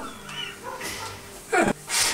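An elderly man crying: faint, broken sobs, then a short cry that falls sharply in pitch about a second and a half in.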